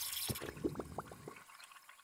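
Water-drip sound effect: a few quick, faint plops, each rising in pitch, dying away about one and a half seconds in.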